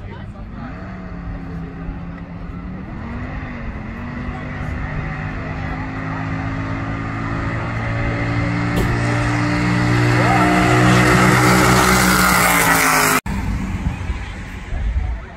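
An alcohol-injected big-block drag car running at high revs through a burnout, its rear tyres spinning in smoke. The engine note holds steady while the whole sound grows louder over several seconds, then cuts off suddenly near the end.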